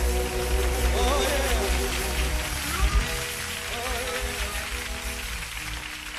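Live gospel group and band playing, with sustained chords over a steady bass and a singer's voice wavering up and down about a second in. The music fades gradually over the last few seconds.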